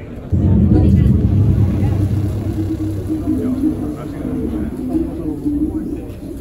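A loud, low rumbling sound effect over the loudspeakers cuts in suddenly about a third of a second in as the ceremonial valve wheel is turned, then slowly fades, with voices murmuring under it.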